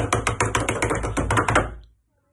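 Hands drumming rapidly on a desktop, a quick drumroll of about a dozen taps a second that stops shortly before the end, made to build suspense before a winner's name is announced.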